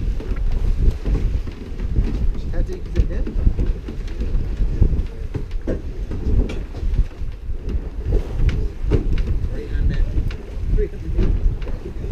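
Fluctuating low rumble of wind buffeting the microphone, with quiet, indistinct voices underneath.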